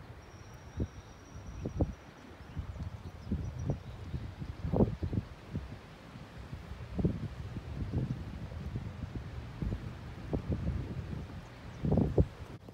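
Wind buffeting the microphone outdoors: a steady low rumble broken by irregular low thumps, with leaves rustling.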